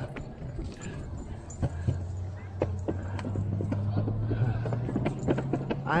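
Wheels rolling over pavement: a steady low hum, with scattered clicks and knocks.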